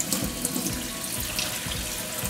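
Kitchen tap running steadily, water pouring onto lentils in a stainless-steel mesh strainer as they are rinsed.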